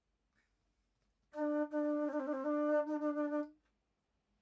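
Alto flute sounding one held low note for about two seconds, starting a little over a second in, dipping briefly to a lower note in the middle before returning, then stopping.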